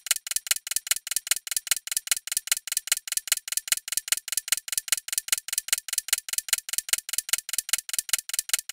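Clock-ticking countdown sound effect: rapid, evenly spaced ticks, about six a second, marking the time given to answer a quiz question.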